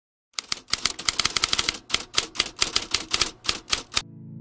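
Typewriter keystroke sound effect: a rapid run of key clacks, several a second, starting about a third of a second in, with a brief pause just before two seconds.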